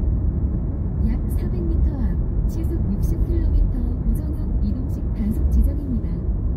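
Steady low road and engine rumble of a car cruising on an expressway, with a person's voice talking over it from about a second in.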